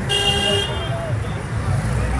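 A vehicle horn honks once for about half a second, shortly after the start, over the steady low rumble of road traffic.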